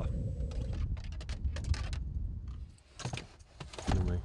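Fishing tackle being handled: a run of light, irregular clicks and rattles over a low rumble. After a brief quiet gap near the end come a few more knocks and clicks.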